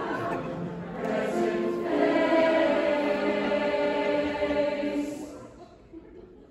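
Large mixed choir singing a held chord that swells, holds, and then dies away near the end.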